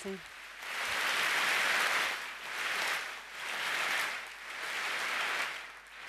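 Audience applause in a large hall, swelling and fading in about four waves.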